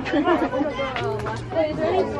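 Several people talking at once, a babble of voices too mixed to make out words.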